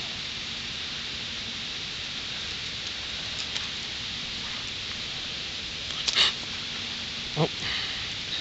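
A mosquito whining steadily close to the microphone over a steady outdoor hiss, with a short rustle of leaf litter about six seconds in.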